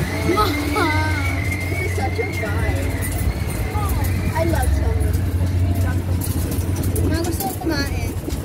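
Low rumble of wind buffeting the microphone, with indistinct voices and a faint steady high tone in the first couple of seconds.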